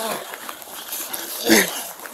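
A man's short strained cry about one and a half seconds in, over the rustle and scuffing of clothing and body-camera handling noise as bodies grapple on the ground.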